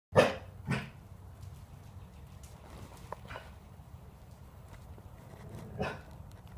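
Dog barking: two loud barks right at the start, then a quieter bark a little over three seconds in and another just before the end.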